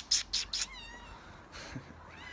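A tabby cat meowing: a short, high, wavering meow about half a second in and another brief one near the end, after four quick hissing bursts at the start.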